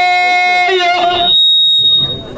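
A man's voice holds one long sung note through a handheld microphone in Amazigh tanddamt style, shifting briefly about two-thirds of a second in. As the voice drops away, a steady high whistle of PA microphone feedback rings for about a second.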